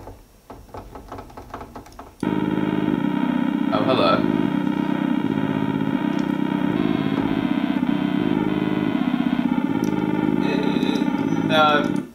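A sustained synthesizer chord from a software instrument in Propellerhead Reason, coming in suddenly about two seconds in and held steadily with a fast pulsing flutter, its notes shifting slightly a couple of times.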